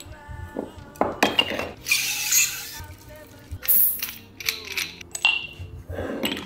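Background music, over short metal clinks and scrapes as the head of a stainless-steel iSi cream siphon is screwed onto the canister and a gas charger is handled.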